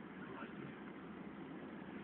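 Car running, heard from inside the cabin: a steady low hum of engine and road noise.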